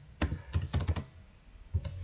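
Computer keyboard keys being typed: a quick run of keystrokes in the first second, then one more near the end.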